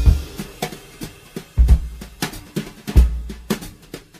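A music track opening on a drum kit: heavy bass drum beats about every second and a half, with snare and cymbal hits between them.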